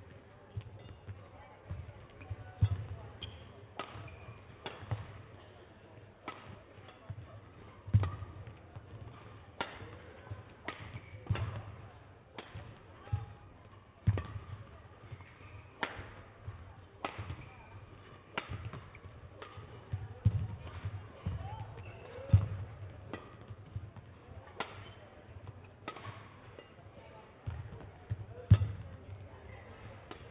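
Badminton rally: rackets strike the shuttlecock back and forth with sharp cracks about every one to one and a half seconds, mixed with the thuds of the players' footwork and lunges on the court floor.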